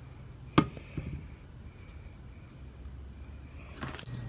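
A single sharp click about half a second in, with a fainter tap just after and another short click near the end, as the plastic solar camping lantern is handled.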